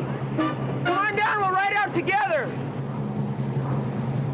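Men's voices shouting indistinctly in short bursts, the last a sharply falling cry, over a steady low hum.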